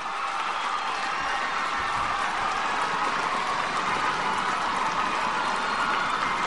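Large arena crowd applauding and cheering in a steady, sustained ovation.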